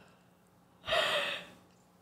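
A person's single sharp breath into a close microphone about a second in, lasting about half a second, with a low puff on the mic as it starts.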